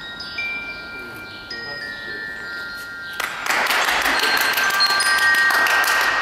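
A slow melody of sustained, bell-like mallet-percussion tones, each note held and then giving way to the next. About three seconds in, a loud burst of clapping joins it and carries on.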